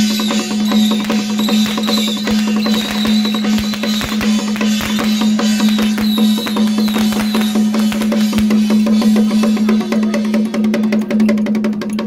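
Procession troupe's percussion band of drums, gongs and cymbals beating a fast, dense rhythm, over a steady low hum, with a high wavering tone over the first half.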